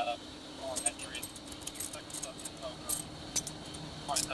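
Metal handcuffs clinking and jingling as they are ratcheted closed on a person's wrists: a scattered run of short, sharp metallic clicks.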